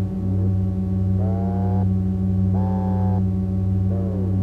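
DIY analog patch-cable synthesizer holding a steady low drone. Over the drone it plays a quick upward pitch sweep, then two short tones about a second and a half apart that each sag slightly in pitch, then a downward sweep near the end.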